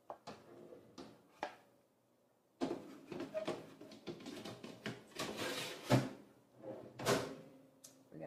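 Cuisinart TOB-1010 toaster oven door opened with a few light clicks, then a metal baking tray scraping and clattering as it is slid onto the oven's wire rack, ending in two sharp knocks as the tray goes home and the door is shut.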